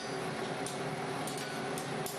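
A steady hum and hiss under a few faint, light taps of a blacksmith's hammer on hot iron being bent around a bending fork on the anvil; no heavy blows.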